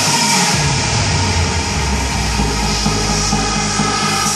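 Electronic dance music played loud over a club system. A deep bass tone slides down in pitch over the first second and a half, then holds low, under a dense high wash.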